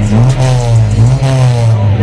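Exhaust note of a Honda Civic's four-cylinder engine through a KRO freeflow muffler, running at raised revs from the tailpipe. The revs rise and fall a little twice.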